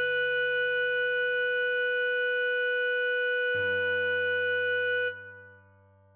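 Clarinet holding one long note, a tied written C-sharp, over a low backing accompaniment that changes chord about three and a half seconds in. The note stops about five seconds in, and only a faint trace of the accompaniment is left.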